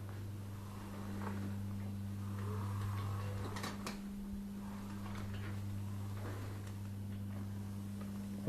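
Powered wheelchair driving at full speed: a steady low hum from the drive, with a faint shifting noise and a couple of light clicks.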